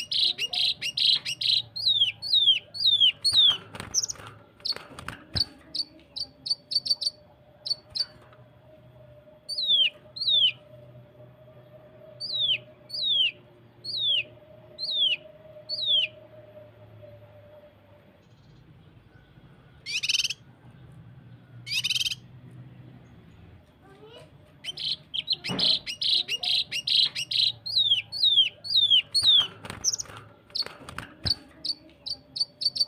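A cucak kinoi (a leafbird) singing. Rapid-fire bursts of high notes run into series of sharp, downward-sliding whistles, about two a second. The song comes in bouts: dense at the start, sparser runs in the middle, then a long pause broken by two short harsh rasps, and a dense rapid-fire bout again near the end.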